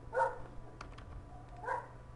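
A dog barking twice in the background, short barks about a second and a half apart, with a faint click between them.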